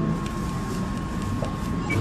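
Steady background noise of a fast-food restaurant: a low, even rumble with a faint constant high whine running through it.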